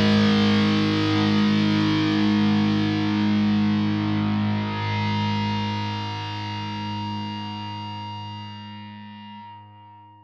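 A heavy metal track ending on a distorted electric guitar chord left to ring, fading slowly and dying away near the end.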